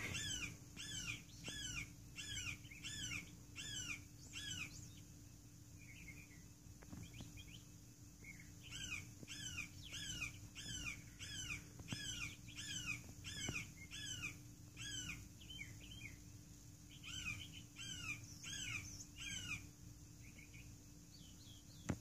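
A hawk screaming in a long series of loud, down-slurred squawks, about two a second, in three bouts with short pauses between.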